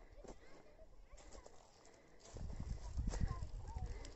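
Open-air ambience: an uneven low rumble on the microphone that gets louder from about halfway through, with faint distant voices and a few short high chirps.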